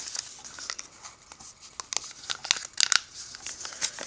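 Origami paper rustling and crinkling under the fingers as the folded paper carrot, with its green leaf piece tucked into the flaps, is handled, with a few sharper crackles a little past halfway.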